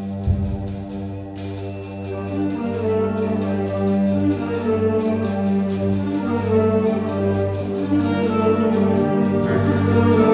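Concert band of woodwinds and brass playing held chords that swell steadily louder through the passage.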